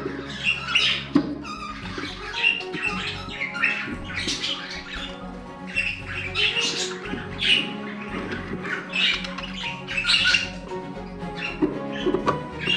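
Budgerigars calling over and over in short, harsh bursts, over steady background music.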